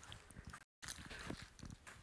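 Faint room tone with a few soft low thuds, and a brief total dropout of the audio about two-thirds of a second in.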